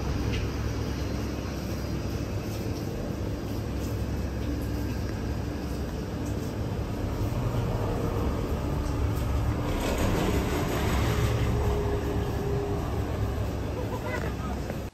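Street traffic running steadily, with a low rumble. The noise swells about ten seconds in as a vehicle passes close by.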